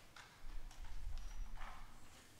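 A few irregular knocks and shuffles of a performer handling an instrument and moving on a wooden stage floor, with a brief rustle near the end.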